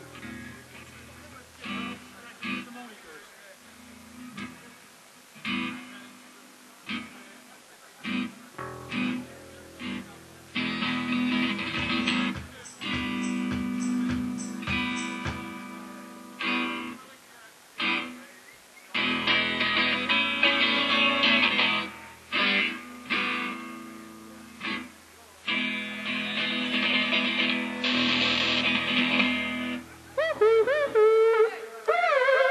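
Amplified electric guitar and bass played on an open stage without drums: scattered single plucked notes at first, then loud stretches of sustained, ringing strummed chords from about a third of the way in, broken by short pauses, as in a soundcheck or warm-up before a set.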